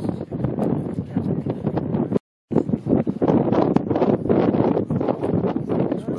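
Wind buffeting the microphone, with a crowd talking faintly behind it. The sound cuts out completely for a moment about two seconds in.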